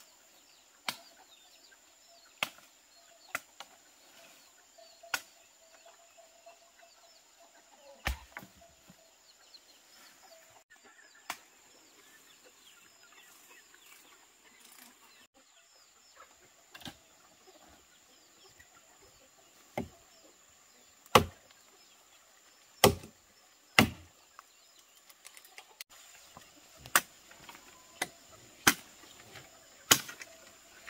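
Sharp knocks and cracks of wood as branches and brush are cleared by hand, about a dozen at irregular intervals, with the loudest three close together about two-thirds of the way through. A faint steady high-pitched tone runs underneath.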